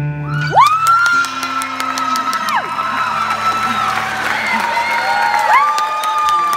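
Audience cheering and whooping, with long held high cries, as the last acoustic guitar chord dies away in the first half-second.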